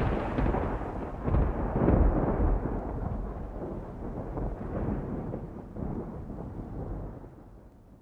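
A deep, thunder-like rumble, as in an outro sound effect, surging a few times early on and then slowly fading away to almost nothing.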